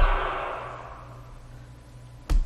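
Reverberant tail of a short guinea-pig sound sample, triggered from a MIDI keyboard and played through a software reverb, dying away over about a second. A low steady hum is left under it.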